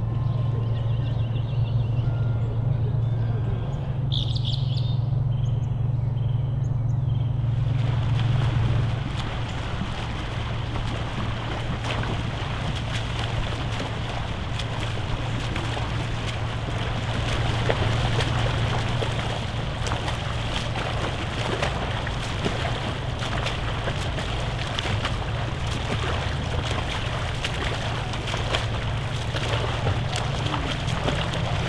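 Open-water lake sound: a steady low hum throughout, a few bird chirps in the first seconds, then from about eight seconds in a steady rush of water and wind noise as front-crawl swimmers splash through the water.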